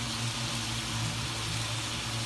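Pork pieces sizzling as they sauté in a wok, a steady hiss with a low steady hum underneath.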